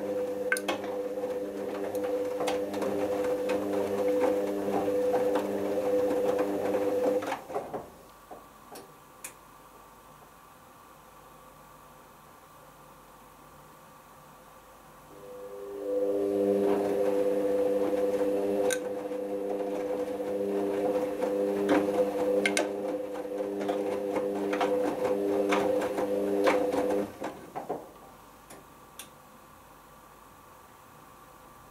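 Hoover Optima OPH714D front-loading washing machine's drum motor humming as it tumbles the wash, with the laundry clicking as it drops, during the heating stage of a 60 °C cotton wash. It runs for about seven seconds, stops for about eight, then tumbles again for about eleven seconds before stopping near the end.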